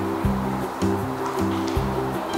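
Background music: a pattern of held low notes changing about twice a second, with light ticks above.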